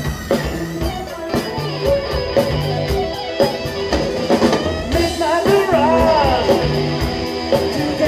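Live rock band playing: a drum kit keeping a steady beat under electric guitar, bass guitar and keyboards, with a melodic line bending in pitch about five seconds in.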